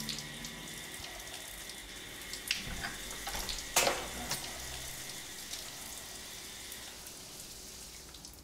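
A shower running, a steady hiss of spraying water, with a few sharp knocks. The loudest knock comes about four seconds in.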